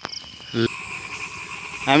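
A steady high-pitched chorus of field creatures, with a brief low pitched sound about half a second in. A man's voice begins near the end.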